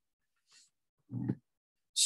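A man's voice making a faint breath, then a short low grunt just past a second in, with no words.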